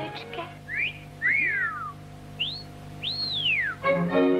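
Whistled bird-like calls over a faint held orchestral chord. There are several short upward and downward glides, two of them together about a second in, and one long whistle near the end that rises and then falls, before the orchestra comes back in fully.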